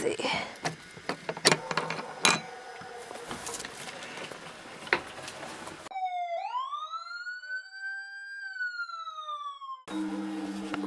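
Rusty metal hook latch and handle of an old wooden door being worked open, a few sharp metallic clicks among handling noise. About six seconds in, this gives way to a single synthetic siren-like tone that swoops up in pitch, holds, then slowly falls until it cuts off.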